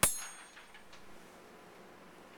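A single strike on a small metal triangle, its high ringing tones fading out within about a second.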